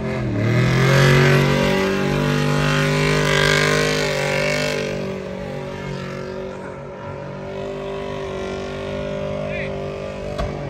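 Car doing a burnout: the engine dips in pitch briefly at the start, then is held at high, steady revs. The tyres screech against the pavement for the first five seconds or so, then the tyre noise eases while the engine keeps running.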